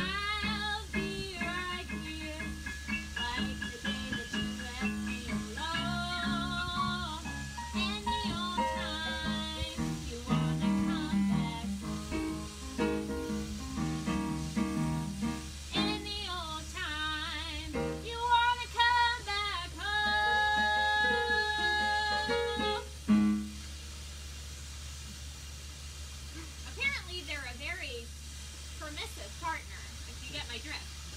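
A woman singing a song with Yamaha digital piano accompaniment. It ends on a long held note about three-quarters of the way through, after which the music stops.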